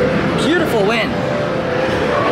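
Busy arcade din: overlapping electronic game-machine sounds and background voices, with a warbling electronic tone about half a second in.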